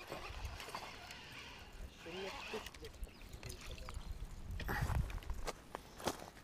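Faint sounds of a baitcasting reel being cranked as a hooked largemouth bass is reeled in, with light uneven ticking and a brief louder noise about five seconds in.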